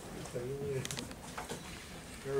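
A short, low murmured voice sound with a wavering pitch, followed by a few light clicks and taps as papers are handled at a wooden podium.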